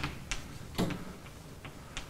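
Chalk tapping and scratching on a blackboard as it is written with: a handful of short, irregular clicks.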